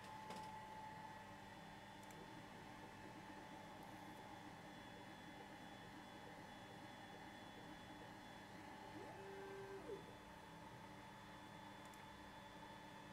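Near silence: a faint steady hum with a few thin steady tones, and a brief faint whine about nine seconds in.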